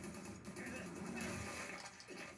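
Faint, even rushing noise from the anime episode's soundtrack playing low.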